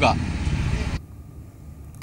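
Street traffic noise, a low rumble with hiss, for about a second, then it cuts off abruptly to quiet room tone.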